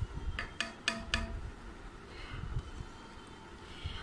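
A ceramic plate tapping against the rim of a steel pot as ground nuts are shaken off it into milk: four light clinks in quick succession about half a second in, each with a short ring.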